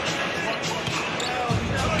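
Live basketball game ambience: a ball dribbling on the hardwood court under a murmur of arena crowd voices, with a low rumble coming in near the end.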